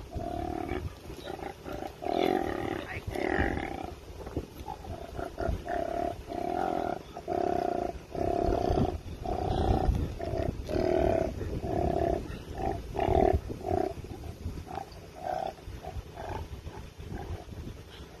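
An agitated koala growling at being handled: a long run of short, harsh growls, about two a second.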